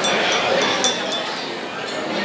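Light metallic clinks, several in the first second, over a murmur of voices.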